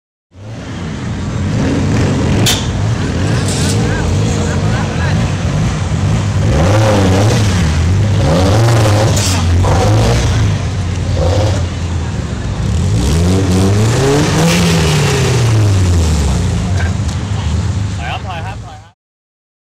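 Car engine revving in repeated blips, its pitch swinging up and down, then one longer rev that climbs and drops back.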